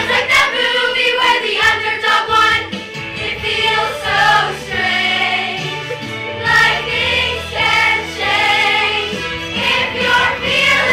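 A large ensemble of young voices singing a musical-theatre number together in chorus, over an instrumental accompaniment with a steady bass line.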